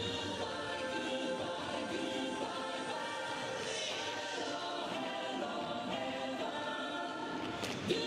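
Music with choral singing, held voices over a steady level, playing for a tap routine. Near the end comes one sharp tap from the dancers' tap shoes on the stage floor.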